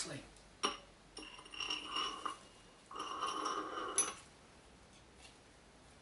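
Steel parts of a bearing-drawing tool (washers, tubing and threaded bar) clinking and scraping against each other and the wheel hub as they are fitted: two sharp clicks, two stretches of scraping with a thin metallic ring, and a clink about four seconds in.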